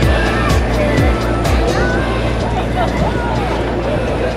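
Indistinct talking over background music and a steady low rumble.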